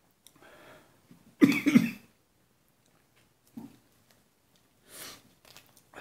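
A man coughs once, loudly, about a second and a half in, with a few much fainter throat and breath sounds before and after; the cough is brought on by the heat of the superhot chile pepper he is eating.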